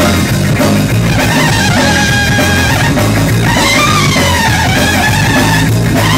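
A live ska band playing a fast, frantic number at full volume: trumpet lines over electric guitar, bass and a drum kit.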